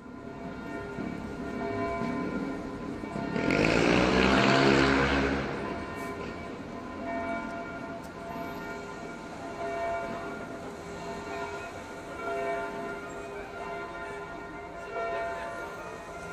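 City street traffic: a vehicle passes, loudest about four seconds in, over steady ringing tones that hold throughout.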